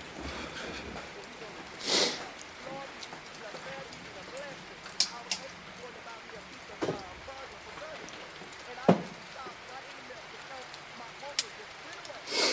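Faint, indistinct murmur of voices over a noisy background, with a loud whoosh about two seconds in and several sharp clicks and knocks scattered through, the loudest about nine seconds in.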